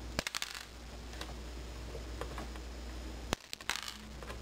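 Plastic model sprue cutters snipping figure parts off a plastic sprue: a quick cluster of sharp clicks at the start, a few single snips, then a loud snap a little after three seconds followed by more clicks.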